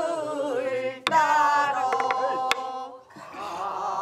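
Southern Korean folk song (Namdo minyo) sung with a wide, wavering vibrato, accompanied by a buk barrel drum struck with a stick. There are two drum strokes, one about a second in and one about two and a half seconds in. The singing pauses briefly before a new phrase starts near the end.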